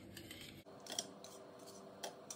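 Wire whisk stirring liquid cow's colostrum in a metal bowl: faint swishing with light clicks of the wires against the bowl, one a little louder about a second in.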